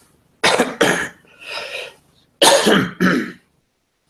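A man coughing into his fist: two pairs of sharp, loud coughs about two seconds apart, with a quieter sound between them.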